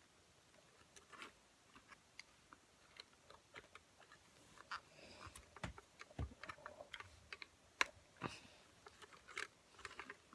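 Faint, irregular clicks, taps and small knocks of hands handling an old folding Polaroid camera's body and fittings, with a couple of dull thumps midway and a sharper click about three-quarters of the way through.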